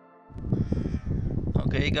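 A loud low rumbling noise starts abruptly about a third of a second in and carries on, with no steady tone in it; near the end a man says "hey".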